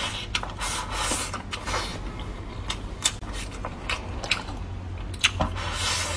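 Close-miked chewing of a mouthful of food: irregular wet smacks and sharp mouth clicks.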